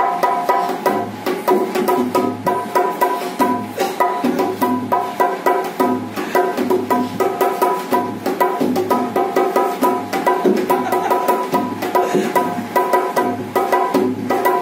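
Dholak, a two-headed barrel drum, played fast with the hands: a dense run of quick strokes over deep bass thumps about twice a second, with the high head ringing on.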